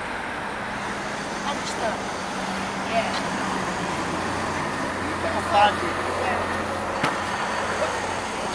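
City street traffic: a steady rumble of passing vehicles, with a deeper low hum about five seconds in. Brief snatches of voices break through now and then.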